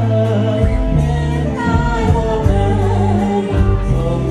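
A man and a woman singing a Khmer song as a duet through handheld microphones, over amplified musical accompaniment with long bass notes and a steady beat.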